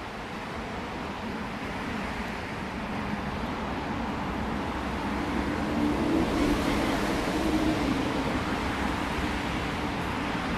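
Steady road traffic on motorway slip roads overhead, swelling a little louder around the middle with a low hum from passing vehicles.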